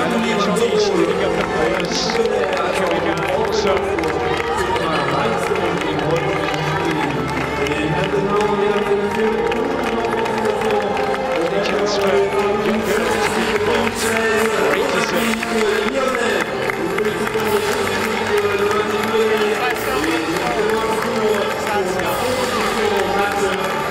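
Music playing over a stadium's public address, with crowd noise and cheering underneath.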